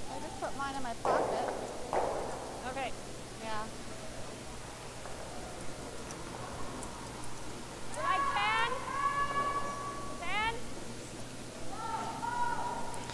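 Curlers' voices calling out on the ice in an echoing curling rink: several short, wavering shouts near the start, around three seconds in, and again around eight to ten seconds, with a brief burst of noise at one to two seconds. A steady low hum runs underneath.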